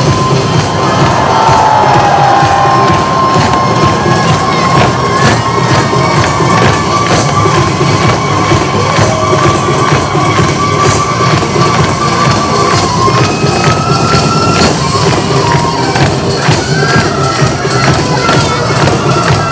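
Live Korean traditional percussion music with many drum strokes and a long held high note, with an audience cheering over it.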